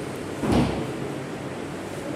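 A single short, dull thump about half a second in, over steady background hiss.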